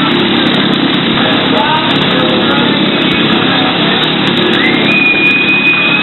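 Motorcycle engine running loud and steady as it circles the wooden wall of a Wall of Death drum. Near the end a long, high whistle rises and then holds.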